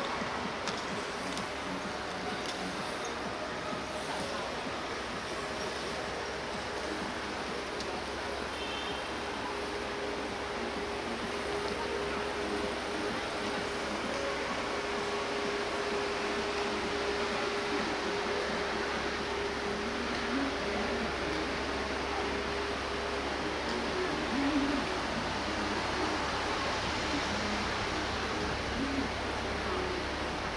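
City street traffic ambience: a steady wash of road noise, with a low, steady hum held for about fifteen seconds in the middle.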